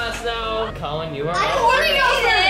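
Children's voices talking, with no clear words.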